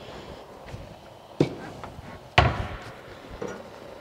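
Kitchen handling noise: two sharp knocks about a second apart, the second louder with a short ring-out after it, as cookware and utensils are set down and picked up around a steel pressure cooker.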